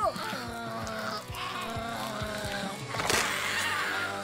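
Cartoon egg cracking and bursting open as a bird chick hatches, over a held music chord. Scattered short cracks come first, then a sharp crack about three seconds in as the shell breaks.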